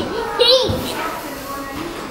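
A toddler's wordless, happy vocalizing, with a high-pitched call about half a second in.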